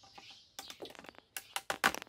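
Tableware on a breakfast table: a quick irregular run of small clicks and taps from cups, glasses and plates being handled and set down, busiest near the end.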